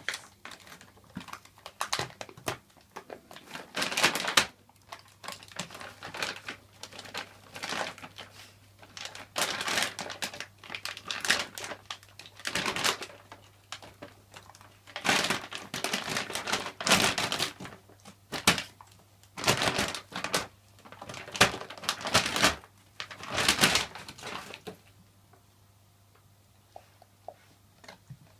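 A dog tearing and chewing at an empty dog-food bag: irregular bursts of crinkling and ripping packaging, some loud, that die away about three seconds before the end.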